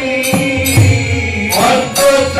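Devotional chanting (kirtan) with held sung notes, metal hand cymbals struck in a steady beat about twice a second, and deep drum strokes around the middle.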